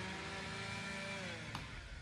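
Chainsaw engine idling steadily, its pitch dipping slightly a little past a second in, with a single sharp click about a second and a half in.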